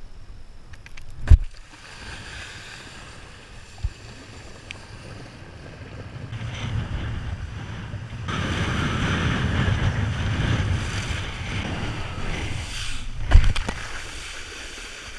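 Wind buffeting a head-mounted action camera and a kiteboard hissing across shallow water, the rush growing louder from about eight seconds in as the board kicks up spray. Two sharp thumps break through, one about a second in and a louder one near the end.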